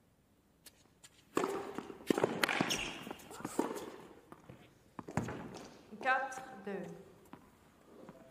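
Tennis rally on an indoor court: after a quiet start, a string of sharp racket strikes on the ball over about five seconds, with players' footsteps on the court.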